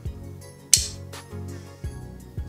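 Background music with a steady beat, and a single sharp hit about three-quarters of a second in.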